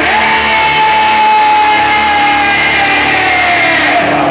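Live rock band playing, with the lead singer holding one long, high, belted note that scoops up at the start and slowly sinks in pitch, over electric guitar, bass and drums.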